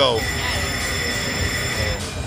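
Video slot machine sounding its bonus-trigger chime: a steady, high electronic ringing tone held for about two seconds, stopping at the end, after three saw-blade symbols land and trigger the wheel feature.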